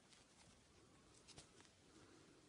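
Near silence, with a few faint soft ticks a little past the middle from a crochet hook working yarn.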